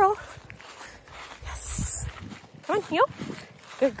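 A woman's voice speaking short words to a dog at the start, about three seconds in and at the end, with a stretch of low rumble and hiss in between from the handheld phone microphone while she walks on grass.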